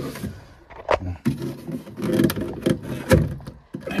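A plastic part being pushed onto its rubber seal inside an Ideal Logic combi boiler and pulled down into place: scraping and rubbing with a few sharp plastic knocks, the loudest about a second in and again about three seconds in.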